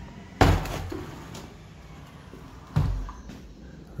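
Two sudden loud knocks, the first about half a second in and the second near three seconds, each fading briefly.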